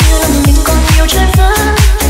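Deep house DJ mix of a remixed Vietnamese song playing loud: a steady, evenly pulsing kick-and-bass beat with a melody line stepping above it, no vocals.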